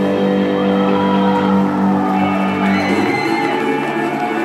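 Live rock band playing loud: an electric guitar holds a droning chord that changes about three seconds in. Shouts rise from the crowd.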